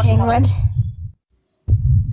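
A man's voice says a word, then a steady low hum carries on under it. About a second in, all sound cuts out completely for half a second, and the hum comes back with a click just before speech resumes.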